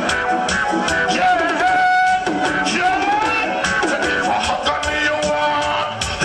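Live reggae dancehall music: a deejay singing into a microphone over a backing rhythm with a steady beat.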